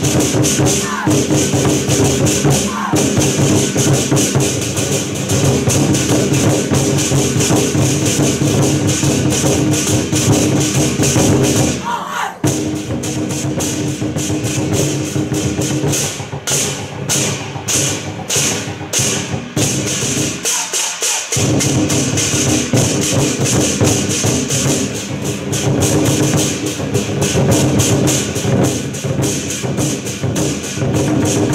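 Ensemble of large Chinese barrel drums with tacked hide heads, beaten with wooden sticks in fast, dense rolls. The playing breaks briefly about twelve seconds in, and a few seconds later turns to separate, evenly spaced strokes before the dense rolls return.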